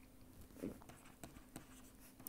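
Faint taps and scratches of a stylus writing on a pen tablet, a few light ticks about a second in, over a low steady hum.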